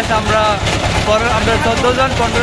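Engine of a wooden river boat running steadily under way, a low even rumble, with people's voices over it.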